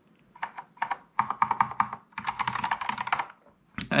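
Key presses on a Kinesis Advantage 360 split keyboard with Cherry MX Brown switches. A few separate keystrokes come first, then a fast run of clicking keys for about two seconds.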